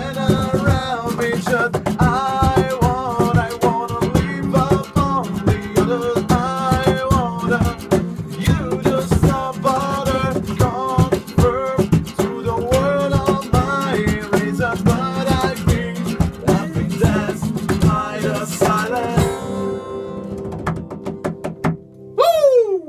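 Acoustic band playing an instrumental passage: rhythmic strummed acoustic guitar under a melodic lead line. Near the end the strumming stops and the song closes on a held, fading chord.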